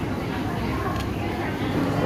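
Murmur of indistinct voices and low hum of a busy indoor public space. About halfway through, a single sharp click of a large plastic building block being pressed onto a block-built toy car.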